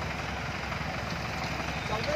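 A vehicle engine running steadily at low revs, with faint voices in the background.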